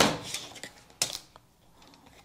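A plastic ruler being picked up and laid down on pattern paper over a cutting mat: a short rustle, then one sharp click about halfway through and a couple of lighter taps.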